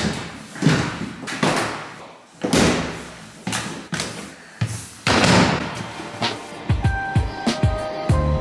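A heavy aluminium hard-shell suitcase thudding down a staircase one step at a time, a loud knock with a short echoing tail every half second to second. Music comes in near the end.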